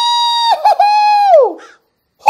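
A man's high falsetto 'ooooh' cry of fright, held long, broken briefly about half a second in, then sliding down in pitch as it ends.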